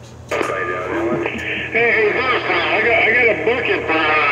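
Voice from a distant station coming in over an AM CB radio on channel 19. It is heard through the radio's speaker, narrow-sounding, hissy and garbled. There is a steady whistle in the first second, and more voices take over from about two seconds in.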